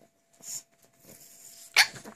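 Pekingese dogs playing on a leather sofa: fur and paws rustling against the leather, then one dog gives a single short, sharp bark near the end.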